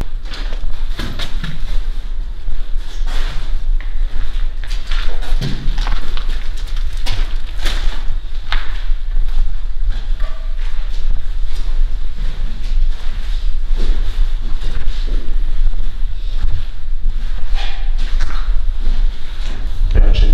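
Footsteps on a debris-strewn floor: irregular steps, scuffs and crunches. Under them runs a steady low rumble from a handheld camera being carried.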